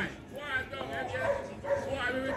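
Several people's voices talking and calling out at some distance, overlapping, with no close voice.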